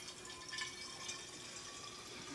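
Mead running fast from a newly started siphon hose into a bottle: a faint, steady liquid filling sound.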